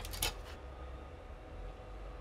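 Plastic miniature parts clicking and rubbing in the hands as a wing is pressed onto the body to test its fit: a few faint clicks in the first half second, then only a low steady hum.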